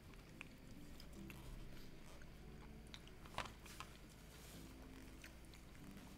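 Near silence with faint chewing: people eating bites of a sandwich, with a few soft scattered clicks.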